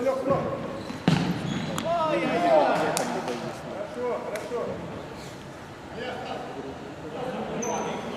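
Futsal ball being kicked and bouncing on a hardwood sports-hall floor, with a sharp kick about a second in and a few more thuds after. Players call out loudly over the play.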